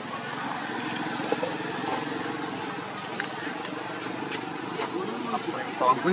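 Indistinct voices of people talking at a distance over a steady outdoor background, with a nearer voice starting just before the end.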